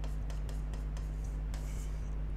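A stylus scratching in short strokes across an interactive display's glass as a word is handwritten, over a steady low electrical hum.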